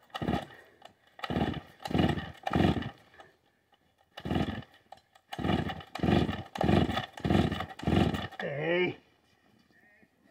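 Vintage Stihl 045 AV two-stroke chainsaw being pull-started: about ten quick pulls of the recoil starter, each a short burst of the engine being spun over, in two runs with a pause between. It does not catch, and the last pull ends in a falling whir.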